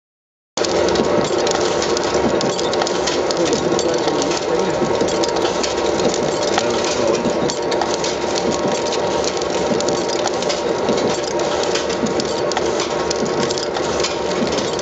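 Tullio Giusi Vanguard HPK laser button etching machine running: a steady mechanical whirr with rapid fine ticking as it etches, smoke rising from the work.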